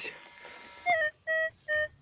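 Metal detector target tone: three short, identical beeps from about a second in, sounding as a clump of dug soil is held over the search coil. They signal that the metal target is inside the clump.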